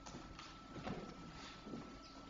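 Faint footsteps of a person walking across a parquet floor.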